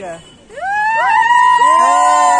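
A group of boys yelling together in one long, high cheer that starts about half a second in, the voices coming in one after another and then held steady.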